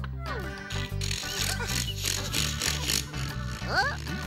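Cartoon background music with a hand-drill sound effect, a noisy mechanical whirring through the middle as a drill bit bores into wood. Short gliding squeaks come at the start and near the end.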